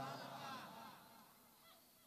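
The end of a man's chanted phrase dying away in public-address echo over the first second, with faint wavering pitch traces, then near silence.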